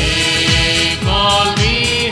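Hymn singing with music over a steady low drum beat, each hit dropping sharply in pitch, about two to three hits a second.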